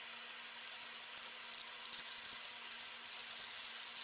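Spoon stirring a thick mayonnaise and sour cream mixture in a ceramic bowl: quick, soft scraping and clicking that starts about half a second in, over a steady faint hum.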